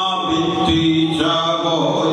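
A man chanting into a microphone over a public-address system, holding long sung tones that step from one pitch to another.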